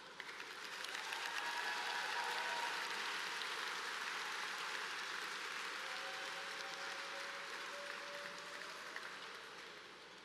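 Audience applause that swells over the first second or two and then slowly dies away.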